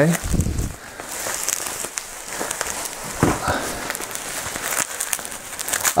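Plastic bubble wrap crinkling and rustling in irregular bursts as it is handled and pulled off a wrapped sword hilt.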